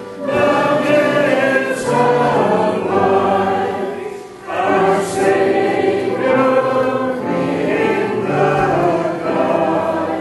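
A choir singing a hymn in sustained, many-voiced phrases, with a short break between phrases about four seconds in.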